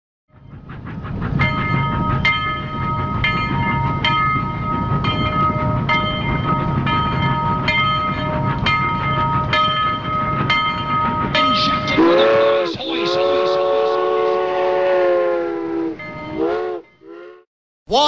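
Train running with a steady rumble and whine and a regular clickety-clack, about one click a second, from the wheels passing rail joints. About twelve seconds in, a horn sounds for about four seconds, followed by a couple of short blasts.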